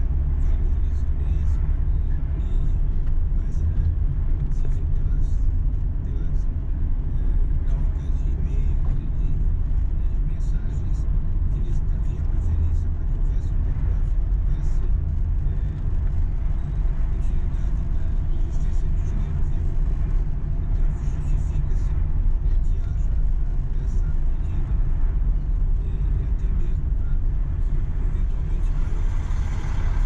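Car driving slowly in city traffic, heard from inside the cabin: a steady low rumble of engine and road noise.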